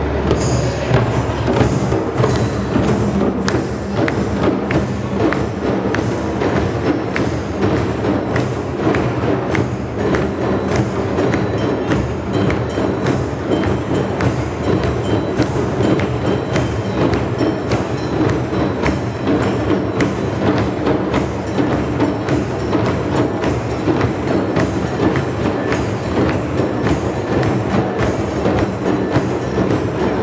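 A large drum circle of many hand-played djembes beating together in a steady, continuous rhythm.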